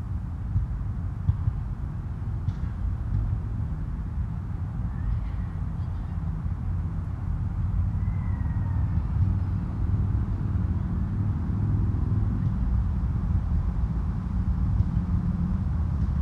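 Outdoor ambience dominated by a steady low rumble, a little louder in the second half, with a couple of faint short high chirps about five and eight seconds in.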